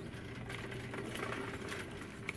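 Plastic shopping cart rolling across a smooth store floor: a steady low hum from the wheels with light rattles and clicks.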